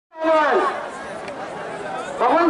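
A man's voice calls out briefly, falling in pitch, then the murmur of a large crowd chattering carries on.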